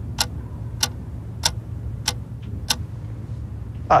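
Trailer sound design: sharp clock-like ticks about 0.6 s apart over a low steady drone. The ticks stop about two-thirds of the way through.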